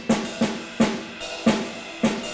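Drums played by a solo percussionist: a steady rhythm of strong accented strokes about every three-quarters of a second, with lighter strokes between them.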